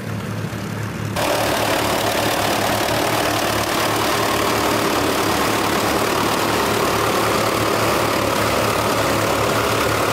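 Doe Triple D tractor's twin Fordson Super Major four-cylinder diesel engines running steadily under load while pulling a six-furrow plough. About a second in the sound jumps suddenly louder and closer.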